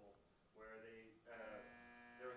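Faint speech from a man away from the microphone, with one long steady buzzy sound in the second half.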